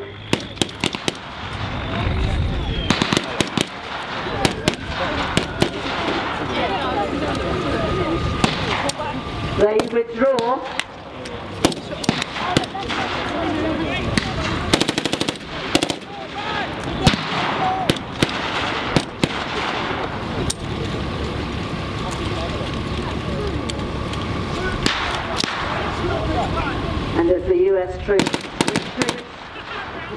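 Blank gunfire from rifles and machine guns in a reenacted firefight: scattered single shots and rapid bursts throughout, with shouts around ten seconds in and near the end. A truck engine runs underneath.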